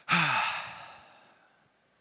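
A long sigh: a breathy exhale with a voiced start that falls in pitch, fading out over about a second and a half.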